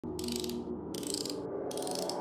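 Logo intro sting made of electronic sound effects: sustained low tones under a fast clicking texture that comes in three surges, leading into music.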